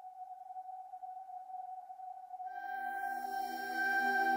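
Soundtrack music opening from silence: a single held note swells in, and about two and a half seconds in a sustained chord of several pitches joins it and the music grows louder.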